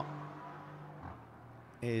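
Racing car engines on track, a steady engine note that drops away about halfway through to a quieter drone.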